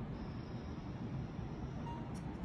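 Steady low background rumble with a faint, thin high-pitched whine held through most of it, and a brief short tone near the end.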